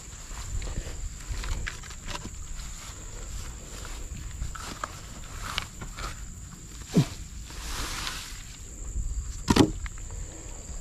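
Steady high-pitched drone of insects, over scattered light knocks and rustles of wooden logs and grass being handled, with two louder knocks near the end.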